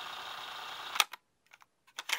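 A low steady hiss that stops abruptly with a sharp click about a second in. Near silence follows, broken by a few faint clicks.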